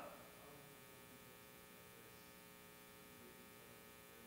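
Near silence: a faint steady electrical hum.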